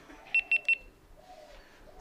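GoPro Hero 10 action camera giving three short, high beeps in quick succession as it powers on.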